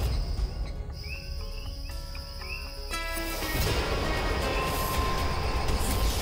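Dramatic background score: sparse short synthesized notes over a low drone, which thickens and grows louder about halfway through, with a few light bird-like chirps.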